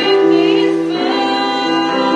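Two female voices singing a slow worship song together into microphones over electric keyboard accompaniment, holding long notes with vibrato and moving to a new note about halfway through.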